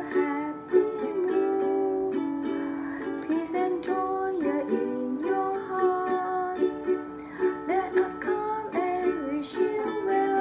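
Ukulele strummed with simple steady strokes, changing chords through a simple song in D, with a voice carrying the melody along with it.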